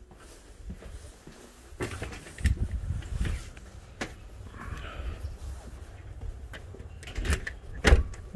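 Walking and handling noise with a low rumble on the microphone, then clicks and a loud knock near the end as a key turns in a door lock and the door is pushed open.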